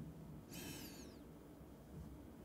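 Cooked webfoot octopus squeaking once, a short high-pitched squeak that falls in pitch about half a second in; the rubbery flesh squeaks as it is handled or chewed.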